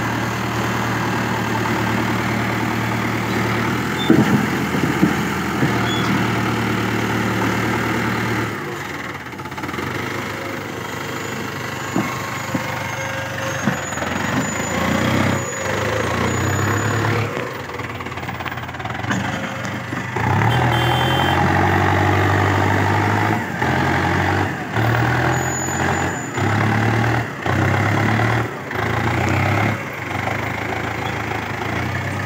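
Mahindra Arjun tractor's diesel engine working hard under a heavy load, pulling two loaded sugarcane trailers hard enough to lift its front wheels. In the last third the engine note repeatedly surges and drops, about once a second.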